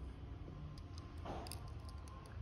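Faint handling sounds of a steel digital caliper being slid shut onto a watch case to measure it: a few light clicks and a short soft scrape.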